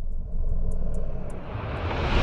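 Logo-reveal sound effect: a low rumbling whoosh with faint high ticks over it, growing louder near the end as it builds toward a burst.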